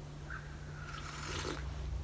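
A soft sip from a ceramic coffee mug, heard as a quiet hiss in the second half, over a steady low hum. A faint tone falls slowly in pitch through the first second and a half.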